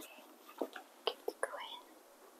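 A woman's faint breath and soft whispered mouth sounds, with a few small clicks.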